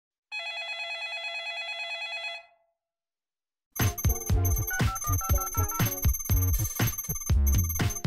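A telephone rings once, a trilling bell ring lasting about two seconds. After a short silence, music with a strong beat starts a little under four seconds in.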